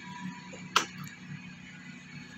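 A single sharp click about 0.8 s in as the ignition key of a Yamaha Mio Gear scooter is turned, over a steady low hum.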